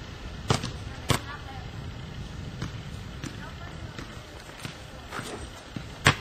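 Basketball bouncing on a driveway: two clear knocks about half a second apart near the start, then several fainter, irregular bounces, with faint voices in the background.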